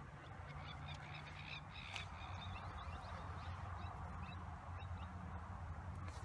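Faint outdoor ambience of birds calling, many short chirps scattered throughout, over a steady low rumble.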